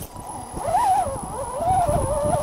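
Electric motor of a stock Axial SCX10 RC crawler on a three-cell battery whining as the throttle is worked. Its pitch rises and falls, with rough scraping of tyres in the dirt underneath. The crawler is straining to climb out of a rut it cannot properly get over.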